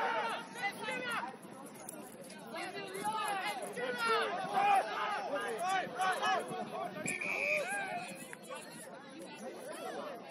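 Several voices overlapping as rugby players and sideline spectators call and shout, with no clear words. A brief high steady tone sounds about seven seconds in, and the voices ease off a little near the end.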